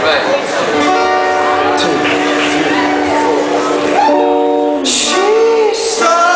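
Acoustic guitar strumming chords as a live rock band starts a song, with voices over it.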